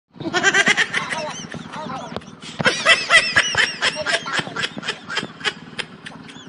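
Several men's voices laughing and shouting in rapid, repeated bursts, in a short run at first and then a longer run in the middle, over a steady low hum.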